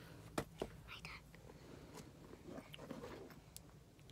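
A quiet room with a few faint clicks of objects being handled near the start and a brief soft whisper about a second in.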